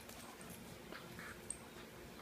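A Morkie and a Schnauzer play-wrestling, with faint short dog vocal noises and scuffling. There is a sharp click about a second and a half in.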